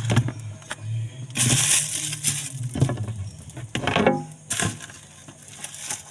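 Plastic containers and food being handled and taken out of a refrigerator: irregular clattering and knocking, with two longer rustling bursts, about a second and a half in and again about four and a half seconds in.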